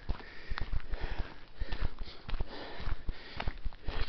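A hiker's breathing while walking uphill on a dirt road, with footsteps and irregular rustling and knocks from the handheld camera.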